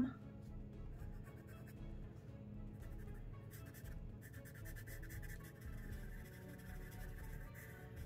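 Colored charcoal pencil scratching across a coloring-book page as it shades, with faint background music holding steady tones.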